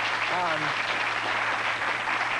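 Studio audience applauding steadily, with a man's short laugh and a word over it near the start.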